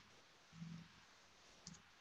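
Near silence: room tone over a web-conference line, with a couple of very faint, brief low sounds.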